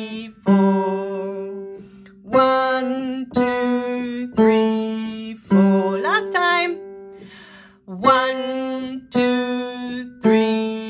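Kawai upright piano, left hand playing four notes stepping straight down, C, B, A, G, about one note a second, each left to ring. The run ends on G, plays through once more, then starts again near the end.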